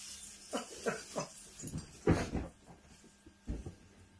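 A series of short animal calls, several in a row, with the loudest and fullest one about two seconds in.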